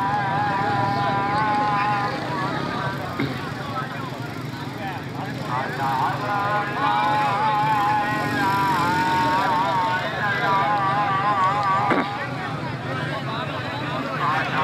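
A loud voice calling in long, held, sing-song phrases, with a steady low rumble underneath. It is typical of a kabaddi match's commentary.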